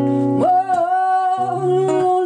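A woman singing live with her own acoustic guitar: about half a second in she holds one long sung note for over a second while the guitar goes on under it.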